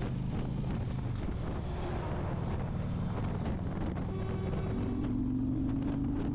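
Harley-Davidson Electra Glide's V-twin engine running steadily on the move, with wind rushing over the microphone. Near the end a lorry's horn sounds, one held note.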